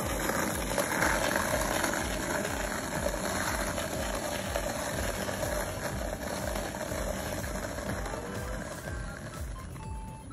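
Skateboard wheels rolling steadily over a rough asphalt road, a continuous gritty rumble that eases slightly near the end as the board rolls away, with a small child riding seated on it.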